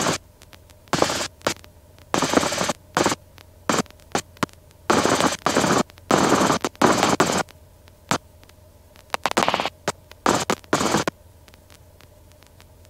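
Helicopter intercom audio cutting in and out: irregular bursts of static-like noise, some very short and some nearly a second long, broken by quiet gaps over a faint steady hum.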